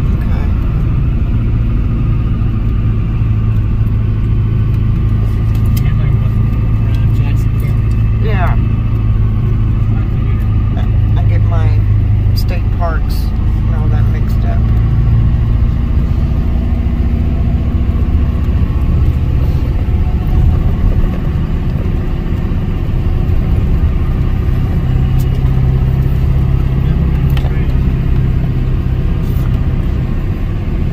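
Steady low rumble of a car's engine and tyres, heard from inside the cabin as it drives slowly along a paved road.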